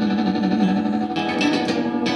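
Acoustic guitar strummed and picked in a country song, with a held note wavering in pitch that ends about a second in.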